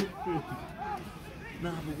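Spectators' voices talking and calling out around a football pitch, with a short click right at the start.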